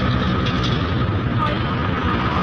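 Motorbike engine running at road speed under heavy wind rush on the microphone, a steady low drone with road noise.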